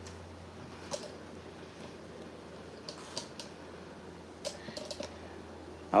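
Quiet room tone with a steady low hum and a few faint, light clicks and taps scattered throughout.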